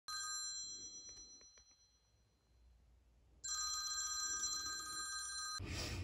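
An iPhone alarm ringing: a steady high chiming tone fades out over the first second and a half. It sounds again about two seconds later and cuts off suddenly near the end.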